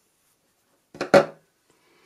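Near silence, broken about a second in by one brief voiced sound from the woman: a short word or vocal noise of under half a second.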